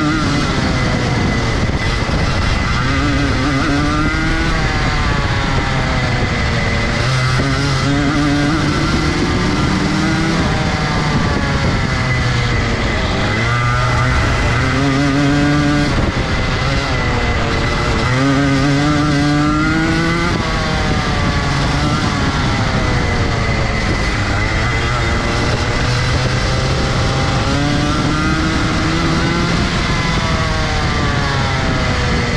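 Rotax Junior Max kart's 125cc single-cylinder two-stroke engine, heard from onboard, revving up in long rising sweeps and dropping back again and again as the kart accelerates along the straights and lifts off for the corners.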